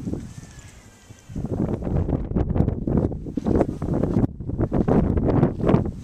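Wind buffeting the camera microphone, starting suddenly about a second in and then gusting loudly.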